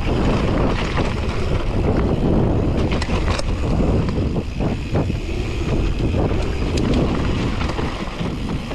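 Wind rushing over the microphone of a mountain bike descending a dirt trail, over the steady rumble of the tyres on the dirt. Sharp rattles and knocks from the bike come over bumps, clustered about three seconds in and again near five seconds.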